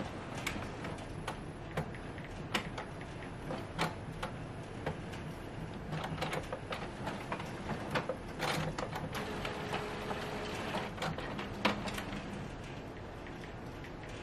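Epson EcoTank ET-8550 inkjet printer restarting itself after a firmware update, its mechanism giving irregular clicks and clunks as it initialises, with a brief steady whir about ten seconds in.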